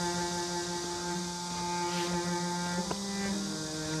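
Background score of soft, sustained held chords, moving to a new chord about three seconds in.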